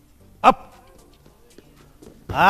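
One short, sharp shout from a man, falling slightly in pitch, about half a second in, over a quiet hall.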